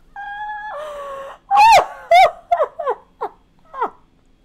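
A woman's high-pitched, squealing laughter: a held high note, then two loud shrieks and a run of shorter cries, each falling in pitch.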